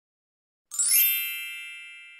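A single bright chime sound effect about two-thirds of a second in: a cluster of high, bell-like tones that rings on and fades slowly.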